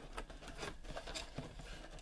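Cardboard box being handled: a string of short rustles and taps.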